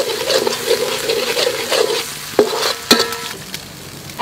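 Minced garlic sizzling in hot oil in a wok, loud at first and slowly dying down. Two sharp clinks, each with a brief ring, come about two and a half and three seconds in.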